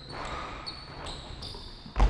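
Basketball play on a hardwood court: sneakers squeak in a string of short, high chirps as the players cut and defend, over the low thuds of the ball being bounced.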